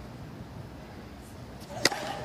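Low steady background of a quiet tennis stadium, then near the end a single sharp crack of a tennis racket striking the ball on a serve.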